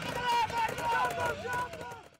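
High-pitched shouting from people on the ride: a drawn-out voice that holds its pitch, then wavers and falls near the end.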